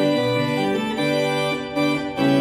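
Church pipe organ playing a succession of sustained chords, the harmony changing every half second or so.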